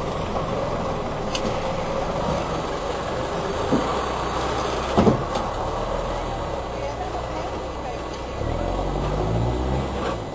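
4x4 pickup engine working under load as the truck crawls over a rutted dirt obstacle, with a few sharp knocks, the loudest about halfway through. The engine gets louder near the end.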